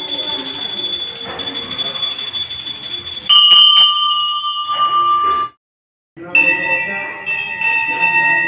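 Temple bells rung continuously in rapid strokes, a sustained clanging ring. About three seconds in a different, lower-pitched bell takes over; the sound cuts out for about half a second past the middle, then another bell rings on.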